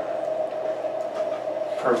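A steady one-note hum over faint room noise.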